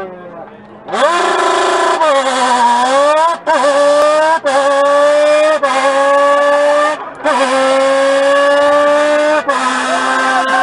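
A man's voice buzzing into an empty beer can, imitating a rally car engine: a whine rises about a second in, then a run of long notes that each climb slowly in pitch and break off briefly, like a car accelerating through its gears.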